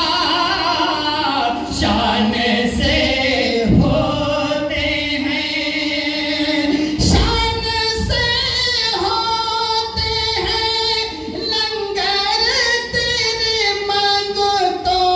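A man's voice singing a naat, an Urdu devotional poem in praise of the Prophet, unaccompanied over a microphone and sound system. He holds long notes with gliding, ornamented turns, and there is no instrumental backing.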